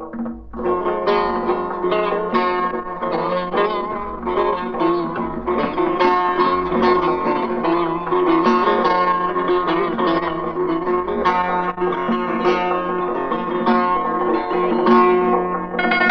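A solo plucked Persian lute playing a continuous stream of quick notes, an instrumental passage of Persian classical music in the mode Bayat-e Esfahan.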